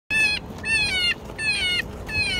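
Electronic predator call playing a recorded animal distress cry through its horn speaker: three short, high-pitched cries, each dipping in pitch at its end.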